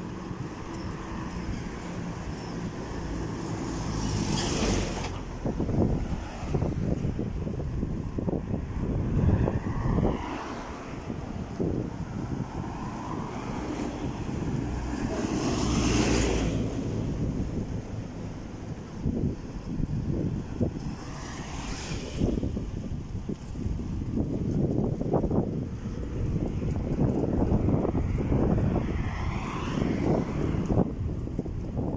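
Wind rumbling on a handheld phone's microphone outdoors, with a steady low rumble, short low knocks and three louder hissing swells: one about five seconds in, one mid-way and one about two-thirds through.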